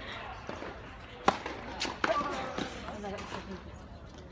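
Tennis ball impacts on a hard court: a few sharp pops, the loudest about a second in, over the murmur of spectators' voices.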